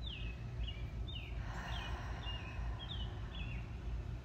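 Small birds chirping, a string of short, quick chirps that each drop in pitch. Through the middle comes a slow, soft in-breath through the nose. A steady low outdoor rumble sits beneath.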